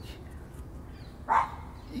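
A single short dog bark about a second and a half in, over faint steady outdoor background noise.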